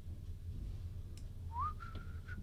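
A person whistling: a note sliding upward about a second and a half in and then held, running on into further notes, over a low steady hum.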